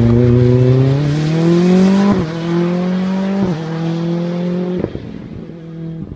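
Ford Fiesta rally car's engine accelerating hard away, its pitch climbing through the gears with sharp drops at upshifts about two and three and a half seconds in, then fading as the car drives off into the distance.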